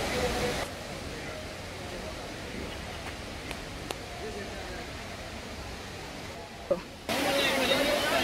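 Steady rushing of Dunn's River Falls' cascading water, with faint voices of other people in the background. The water noise drops abruptly about a second in and comes back louder near the end, along with a babble of voices.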